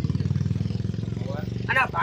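A vehicle engine idling steadily, a low, even pulsing, with a man's voice coming in near the end.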